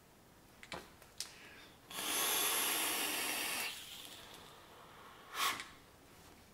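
Vape hit on a Digiflavor Pilgrim GTA/RDTA rebuildable atomizer: a couple of small clicks as the airflow ring is turned slightly closed, then a steady airy hiss of air drawn through the airflow slots for about two seconds, and a short breathy puff near the end.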